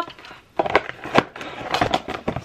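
A few sharp knocks and clatters as a picture frame is handled and set down, the loudest a little after a second in; really loud.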